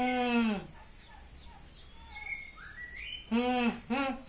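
A person's drawn-out vocal sounds without words, like groans or moans: one at the start, then a quick series near the end. Faint bird chirps come in between.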